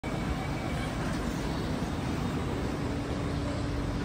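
Steady rumble and hum of a Kawasaki C751B MRT train standing at the platform with its doors open, a steady low hum joining about two and a half seconds in.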